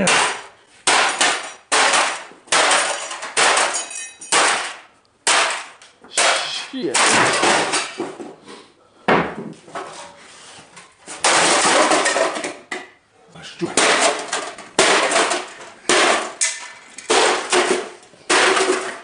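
A sledgehammer striking a desktop computer over and over, in an irregular series of heavy blows, often two or three a second. Each blow clangs on the metal case, and loose parts rattle and crash after some of them.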